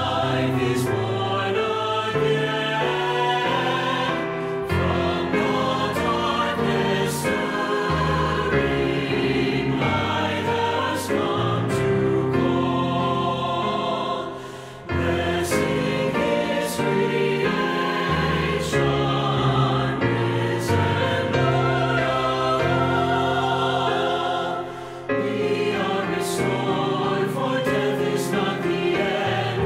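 SATB church choir singing a hymn-tune anthem in harmony with piano accompaniment, with short breaks between phrases about halfway through and near the end.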